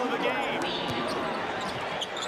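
Live NBA game sound on a hardwood court: a basketball being dribbled, with sneakers squeaking about half a second in, over steady arena crowd noise.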